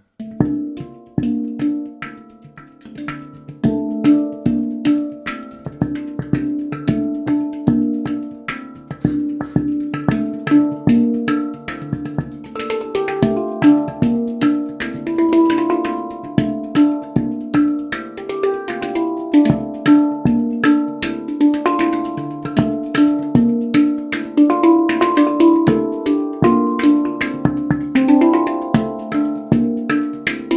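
A single handpan played by several pairs of hands at once in a fast, continuous groove: rapid struck steel notes ringing over a repeating low bass line. The groove grows denser partway through as higher notes join in.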